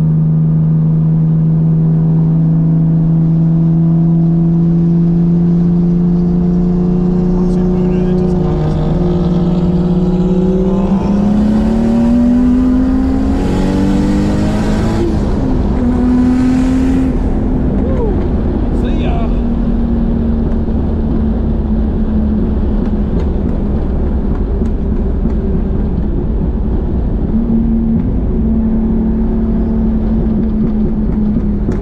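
Car engine heard from inside the cabin while driving on track: it holds a steady note, then revs up about a third of the way in. A few seconds of hiss follow around the middle, then the engine settles to a steady, higher note.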